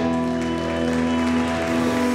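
Live rock band holding a sustained, ringing chord, with audience applause over it.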